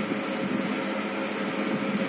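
Steady background hum with a few faint constant tones, even and unchanging.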